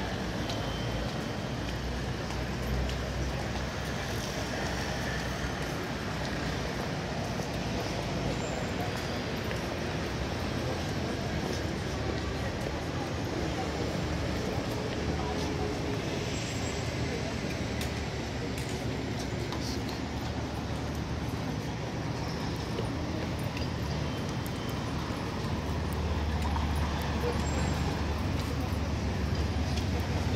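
Busy city street: a steady hum of road traffic with indistinct voices of passers-by. A vehicle's low rumble grows louder near the end.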